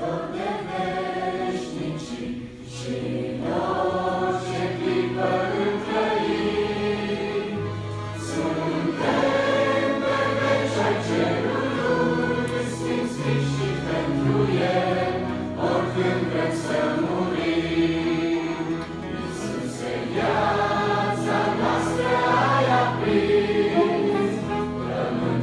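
Church choir of young voices singing a hymn in Romanian, with instrumental accompaniment carrying held low bass notes under the voices.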